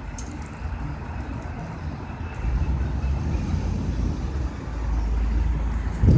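Pickup truck with a front snowplow driving past close by, its engine giving a steady low rumble that swells a little past halfway and again near the end.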